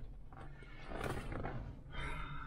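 Quiet, steady low rumble inside a car cabin, with a soft rustle about a second in.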